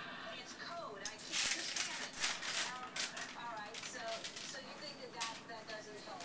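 Quiet talking voices in a small room, with a cluster of rustling and small knocks from things being handled about a second and a half in.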